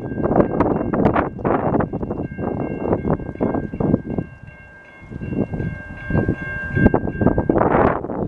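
Horn of an approaching NJ Transit Comet V cab car, sounding a long steady chord as the train blows for a road crossing, cutting off about seven and a half seconds in. Louder irregular rumbling gusts, likely wind buffeting the microphone, lie over it and drop away briefly near the middle.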